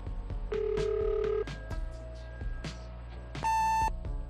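Answering-machine tape playback: a steady low electronic tone held for about a second, then fainter tones, then a short, loud, higher-pitched beep near the end, the machine's beep before the next message. Background music with a steady beat runs under it.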